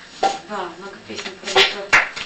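A person's voice, with a sharp click just before the end.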